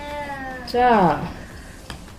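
A voice saying a single drawn-out word, first held at a level pitch and then louder and falling steeply in pitch, in a flashcard-naming exchange with a toddler. A single click follows near the end.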